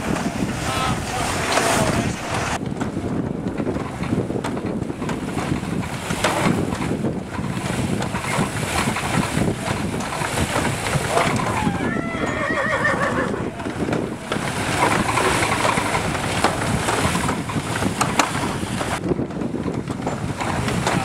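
Horse-powered treadmill and wooden grain separator running, a steady dense rattle as straw is fed through the threshing works. A horse whinnies briefly about twelve seconds in.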